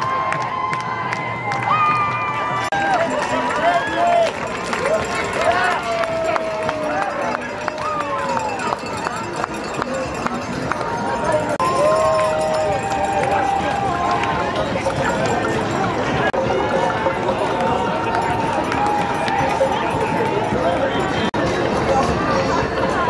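Large outdoor street crowd, many voices talking and calling out at once, with some longer drawn-out shouts rising above the babble in the first half.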